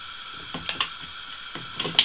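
The steel bolt of an 8mm Mauser King Carol carbine being run forward by hand, a few soft metallic clicks and then one sharp click near the end as it closes. It is closing on a headspace gauge held in the extractor of the controlled-feed action.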